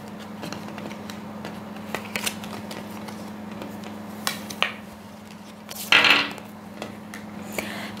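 Tarot cards being shuffled and handled over a glass tabletop: scattered light clicks and taps, with a short rustle about six seconds in, over a steady low hum.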